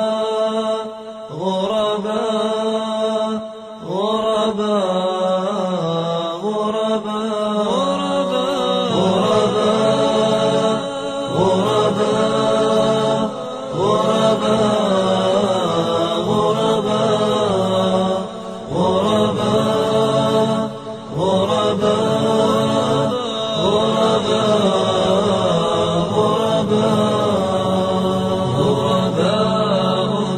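A cappella nasheed chanting by layered voices, with no instruments heard. A low held drone lies under a slow melody that rises and falls phrase by phrase, with short breaks between phrases.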